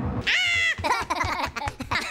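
High-pitched, cartoonish Minion-style gibberish voices: one long squealing call near the start, then quick babbling chatter.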